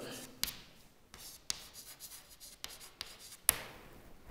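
Chalk writing on a chalkboard: faint scratching strokes broken by several short taps, the sharpest about three and a half seconds in.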